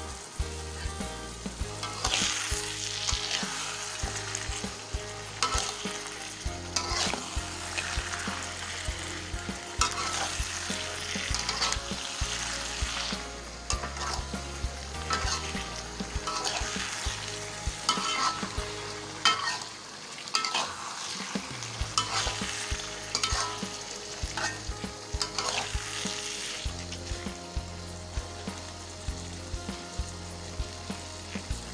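Metal spatula stirring and scraping a salted-fish and pineapple sambal around a wok, with the food sizzling as it fries. The strokes come in short, irregular scrapes one after another.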